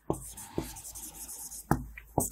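Marker writing on a whiteboard: uneven scratching strokes, with a sharper tap near the start and another about a second and a half in.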